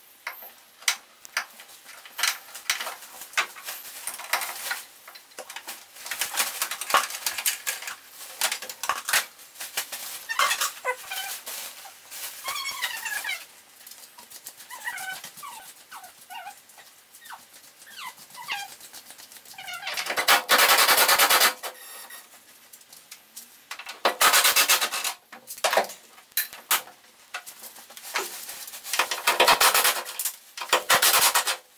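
Clicks, rattles and squeaks of hand work pulling wiring out of a car's open tailgate. Louder rasping bursts come three times, about two-thirds of the way in, shortly after, and at the end.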